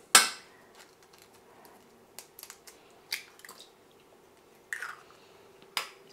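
Eggs cracked open on the rim of a Thermomix's stainless steel mixing bowl: one sharp knock just at the start, then a few soft clicks and crackles of shell, and another short knock near the end.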